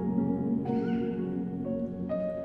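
Massed choir of several hundred voices singing a slow lullaby in long held chords over piano. New notes enter twice, about a third of the way in and again near the end.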